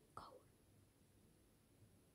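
Near silence, broken only by one short, faint whispered "oh" right at the start.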